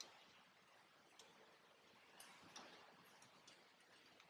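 Near silence: faint room tone with a few soft, scattered ticks.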